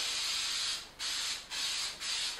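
Aerosol can of Kiwi heavy-duty water repellent spraying onto a backpack: a steady hiss that stops just under a second in, then two shorter bursts. It comes out fast and heavy.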